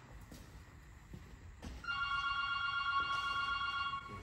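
A steady electronic ringing tone, several pitches sounding together, held for about two seconds from halfway in and cut off at the end. Before it there is only faint room noise with a couple of light knocks.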